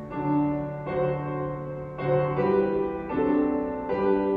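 Piano playing a hymn tune in slow chords, a new chord struck about once a second and fading between strikes.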